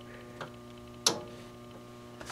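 A sharp click about a second in, with a fainter one before it, as the power knob of a late-1960s RCA Victor colour console television is pulled on, over a steady low hum.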